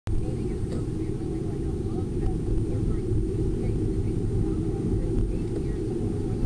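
Steady engine and road rumble of a car being driven, heard from inside the cabin through a dashboard camera's microphone, with a faint thin high whine throughout.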